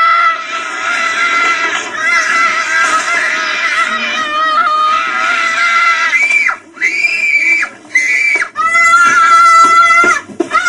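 A young boy screaming in a tantrum over being refused sweets: long, loud, high-pitched wails, breaking into several shorter held screams with brief pauses for breath in the second half.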